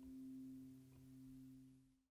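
The last acoustic guitar chord ringing out faintly and fading away to nothing.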